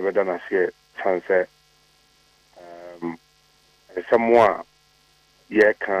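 Speech heard over a telephone line, in short phrases broken by pauses, with a steady electrical hum running underneath.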